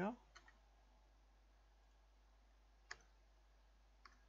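Near silence broken by a few faint, short clicks from computer input, the sharpest a single click about three seconds in.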